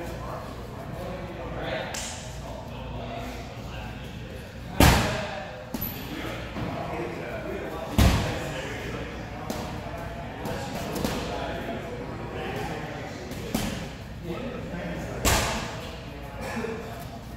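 Three loud, sharp thuds, about five, eight and fifteen seconds in, each echoing in a large hall.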